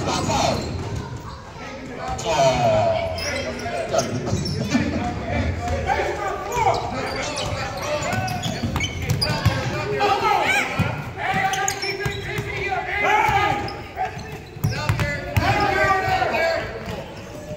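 A basketball dribbled and bouncing on a hardwood gym floor, a series of sharp thuds that ring in the large hall, mixed with voices of players and spectators.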